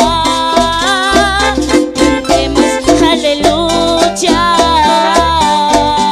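A woman singing a worship song into a microphone over live keyboard band accompaniment with a steady beat, her voice holding long notes with vibrato.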